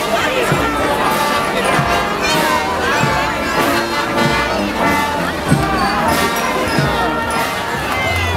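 Brass band music playing, with a large crowd chattering over it.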